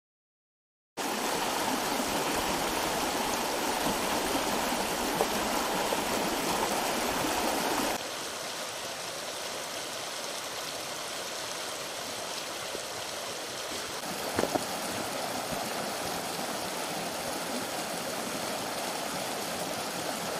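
A shallow stream running over rocks: a steady rush of water that starts about a second in and drops a step in level at about eight seconds.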